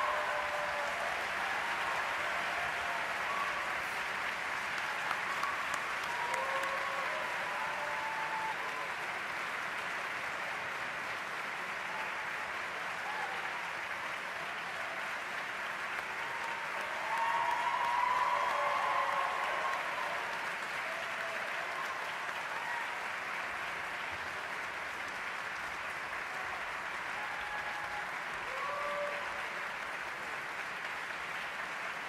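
A large audience applauding steadily, with cheers and shouts rising above the clapping now and then. The applause swells loudest about two-thirds of the way through.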